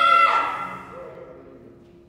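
The last sung note of a hymn phrase, held briefly with a waver and then fading into the church's reverberation within about a second and a half. Faint steady low accompaniment tones stay underneath.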